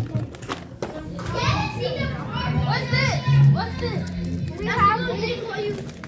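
Children's high-pitched, excited voices calling out, not clear words, over music with a steady bass line.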